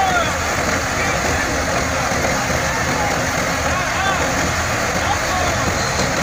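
A tractor-driven threshing machine running steadily under load as crop sheaves are fed in. The New Holland tractor's diesel engine runs low beneath the dense, even noise of the thresher drum.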